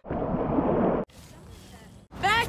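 A group of people shouting and cheering together for about a second, cut off suddenly, followed by faint outdoor background noise.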